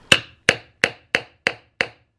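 Small hammer tapping a pin into the walnut base plug of a cow-horn powder horn: six sharp, evenly spaced taps, about three a second, driving the pin until it sits flush.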